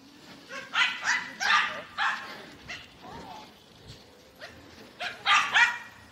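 Small dog barking: a quick run of about five sharp barks in the first three seconds, then two more in fast succession near the end.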